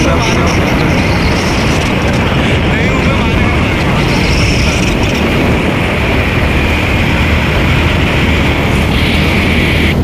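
Loud, steady wind rush and road noise on the microphone of a two-wheeler moving at speed, with a steady low hum underneath.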